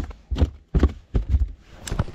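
Rainbow trout flopping in a rubber landing net on a boat floor: a run of about five dull thumps, roughly two a second.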